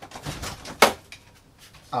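Household refrigerator door being opened and shut, with a rustle of handling and one sharp thump a little under a second in.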